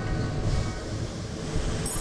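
Passenger train running along the track: a steady low rumble heard from inside a carriage with its windows open.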